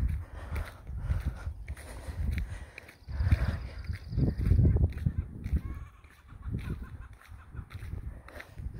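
Wind gusting over a handheld phone's microphone in irregular low rumbles, with a woman breathing hard as she walks.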